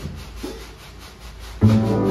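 Live jazz: acoustic upright double bass notes over a drum kit keeping a steady pulse. The bass drops away for about a second and a half, leaving only the faint drum strokes, then comes back with a loud low note near the end.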